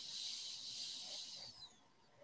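A person breathing out near the microphone: a hiss lasting about a second and a half that fades away.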